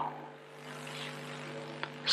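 A pause in speech filled with the steady low hum and faint hiss of an old recording, with one small tick near the end.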